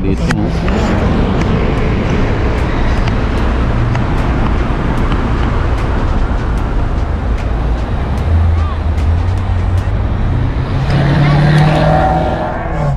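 Steady road and engine noise from inside a moving car in city traffic.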